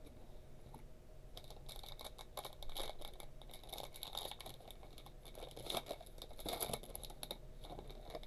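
Faint, irregular rustling and crinkling of trading cards being handled and shuffled by hand.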